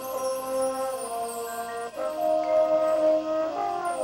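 High school marching band playing a slow passage of long held chords, moving to a new chord about two seconds in and again near the end.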